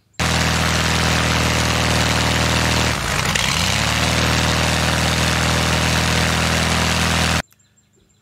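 UL Power UL520iS six-cylinder aircraft engine and pusher propeller running on a ground test. About three seconds in the engine falters briefly, its pitch sagging and climbing back within about a second, the hiccup when the fuel source is switched, before it runs on steadily and cuts off suddenly near the end.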